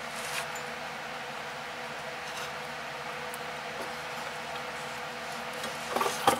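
Steady room tone: an even hiss with a faint constant hum, broken only by a few very faint clicks.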